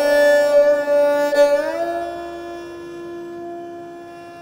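Solo esraj bowed in a slow aalap of Raag Puriya Dhanashri: a held note slides up to a higher note a little before the midpoint, then sustains and slowly fades.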